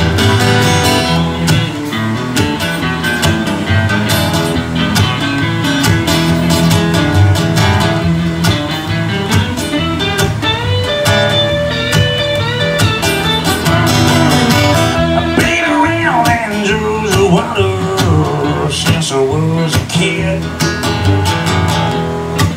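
Acoustic guitar played solo with no singing: strummed chords mixed with picked single-note lines.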